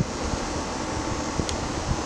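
Steady outdoor background noise with a low rumble and a faint hiss, no distinct event.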